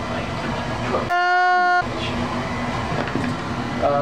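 A loud, steady horn-like tone starts about a second in and lasts about two-thirds of a second, with all other sound muted while it plays: an edited-in sound effect. Before and after it, low workshop room noise with faint voices.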